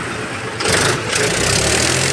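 Mahindra 265 DI tractor's three-cylinder diesel engine with inline injection pump, running just after starting. It is revved briefly about half a second in, then runs on steadily.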